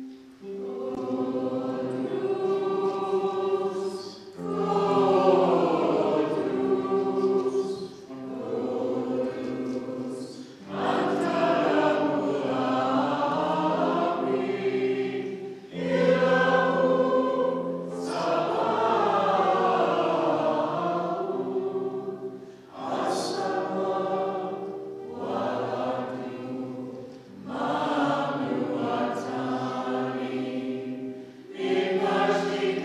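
A group of voices singing a liturgical hymn, led by a cantor at a microphone. The hymn comes in phrases of a few seconds each, with short pauses for breath between them.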